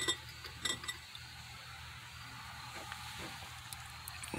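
A few light clicks and taps of glass and ceramic as the lidded shot glass is settled on the microwave's glass turntable, mostly in the first second, then a faint steady hiss of room tone with a couple of fainter ticks.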